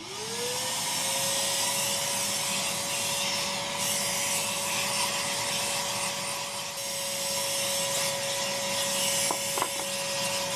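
An electric motor switches on and spins up, its whine rising over about a second to a steady pitch, then runs on with a steady hiss over it. Two light ticks come near the end.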